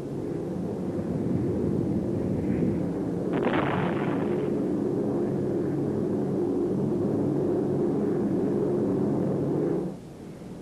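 Aircraft engines droning steadily, with one sharp explosive burst about three and a half seconds in. The drone cuts off just before the end.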